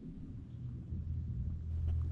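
Low wind rumble on the microphone, slowly growing louder toward the end.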